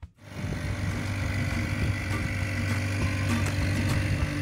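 Boat's outboard motor running steadily, heard from on board as a continuous low drone that starts just after the beginning.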